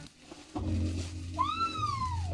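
A single long, high-pitched vocal call, rising quickly and then sliding slowly down in pitch, starting past the middle, over a low steady hum.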